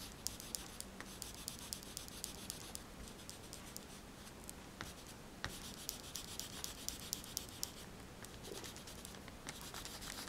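Oil pastel scratching across drawing paper in quick, even back-and-forth colouring strokes, with a thinner stretch around the middle before the strokes pick up again.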